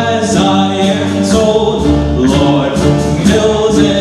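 Live rock band playing a song with sung vocals, over steady drum and cymbal hits.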